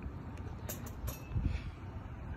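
Low, uneven outdoor rumble, with a few brief clicks a little under a second in.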